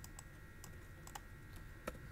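Faint computer keyboard typing: a handful of scattered, sharp key clicks over a faint steady high hum.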